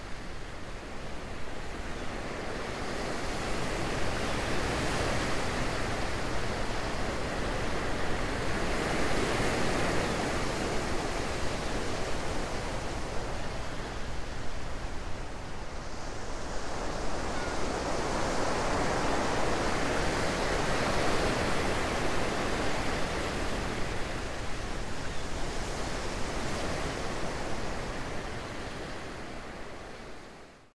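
A rushing noise like waves washing, swelling and receding in slow surges every few seconds, then fading out at the end.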